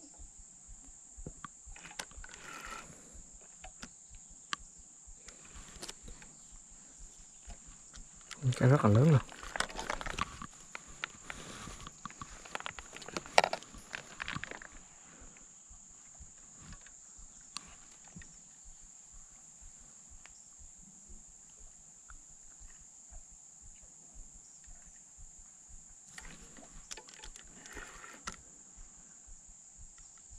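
Insects keep up a steady high drone over faint scattered clicks, while the rod is bent on a hooked fish. A person's voice breaks in loudly about nine seconds in, with softer vocal sounds near the start and near the end.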